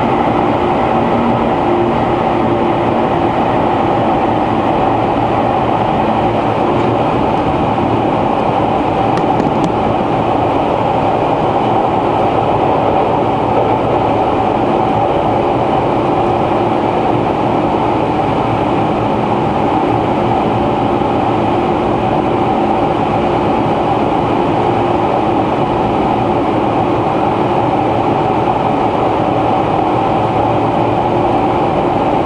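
Inside a 485 series electric train car running at steady speed through a long tunnel: loud, even wheel-and-rail running noise with a constant hum, and no rail-joint clicks.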